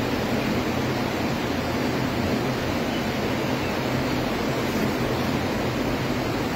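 Steady hiss and low hum of milking-parlour machinery, with a milking cluster running on a cow.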